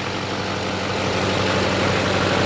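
6.6-litre Duramax LMM V8 turbodiesel idling steadily, heard close up in the open engine bay; it runs very smooth.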